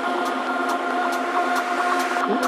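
Psychedelic trance track in a breakdown: held synth tones with no kick drum or bass, and faint ticks above.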